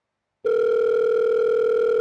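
Telephone call tone: one steady beep at a single pitch, starting about half a second in.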